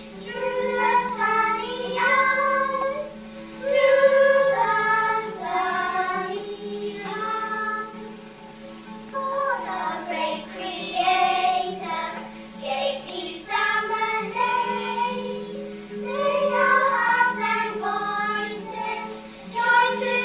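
A group of young children singing a song together, in phrases with held notes and short breaks between them.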